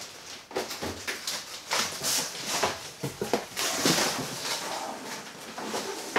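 Cardboard boxes and packaging rustling, with a string of light irregular knocks and scrapes as a large boxed vinyl figure is handled and lifted out of a shipping box.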